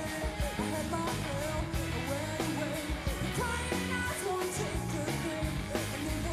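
Rock song played live: a woman singing over electric guitar, bass and a steady drum beat.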